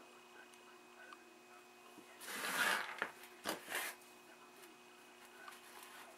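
Handling noise of a plastic CRT cable socket housing: a rustling scrape lasting under a second about two seconds in, then two shorter scuffs, as parts are set down and picked up, over a faint steady hum.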